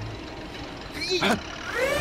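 A cartoon logging machine's engine running steadily, with a short vocal cry about a second in and a rising shout starting near the end.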